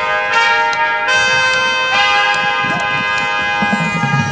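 High school marching band playing slow, sustained chords that build in layers, with new notes entering about a third of a second, one second and two seconds in.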